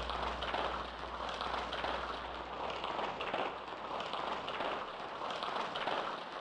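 Electronic music soundtrack in a hissing, rain-like noise texture that swells and ebbs irregularly. A low bass hum under it fades out about a second in.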